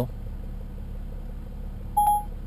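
Steady low hum of a BMW X5 35d's diesel engine idling, heard from inside the cabin. A short electronic beep comes right at the end.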